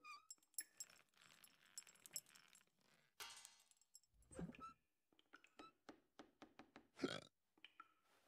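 Cartoon sound effects of a panda rummaging in a kitchen: scattered light clicks and clinks of wood and crockery, with two short throaty vocal noises from the panda, about four and seven seconds in.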